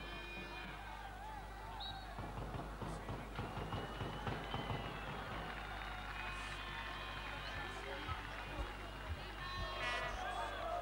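Stadium crowd sound from the stands, with music and many voices in it, over a steady low hum from the old broadcast tape.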